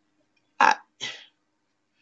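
Short halting vocal sounds: a clipped spoken 'I' about half a second in, then a brief breathy vocal noise just after.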